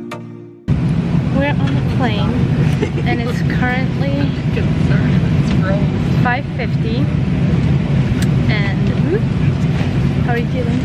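Steady low rumble inside an airliner cabin before takeoff, with indistinct passengers' voices chattering over it. Electronic music cuts off just under a second in.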